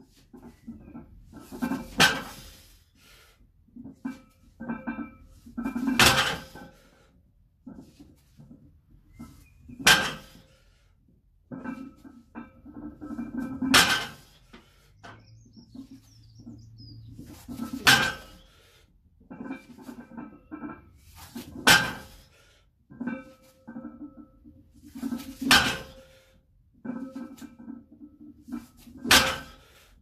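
A loaded 135 kg barbell set down on the floor at the bottom of each sumo deadlift rep, the plates hitting eight times at a steady pace of about one every four seconds.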